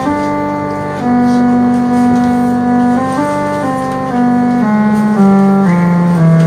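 Electronic keyboard instrument built to Byzantine music's intervals, the kanonion, playing a Byzantine-mode scale in held, organ-like notes. The notes step mostly downward about every half second to two seconds over a steady lower note.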